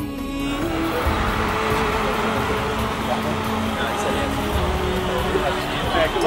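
A soccer team shouting together in a pre-game huddle, a jumble of many voices starting about a third of a second in, over background music.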